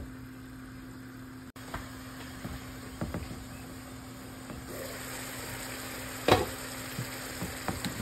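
Coconut curry sauce simmering and sizzling in a pan under a glass lid; the sizzle grows louder a little past the middle as the lid is lifted. One sharp clink of metal or glass on the pan comes about six seconds in.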